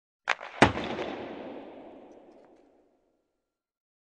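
Two sharp bangs about a third of a second apart, the second louder, followed by a long echoing tail that fades away over about two seconds.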